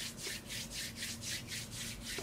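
Palms rubbed briskly together, a fast, even back-and-forth scuffing of skin on skin at about six strokes a second.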